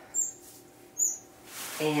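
Small estrildid finch giving short, high chirps, three times, a little under a second apart.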